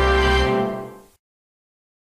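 Logo jingle music ending on a held chord that fades out and stops about a second in.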